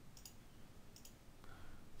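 Faint computer mouse clicks: a quick pair near the start and another pair about a second in.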